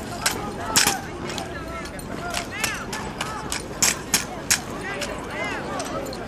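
Drill rifles being slapped, spun and caught by two cadets in a tandem armed drill routine: a run of sharp, irregular clacks, the loudest a little before a second in and around the middle, over the murmur of spectators.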